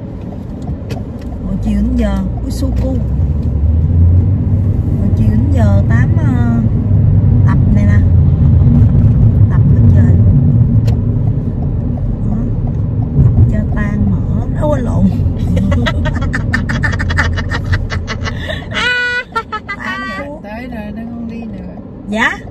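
Road and engine rumble inside a moving car's cabin, building to its loudest about halfway through and then easing off. Voices come and go faintly over it.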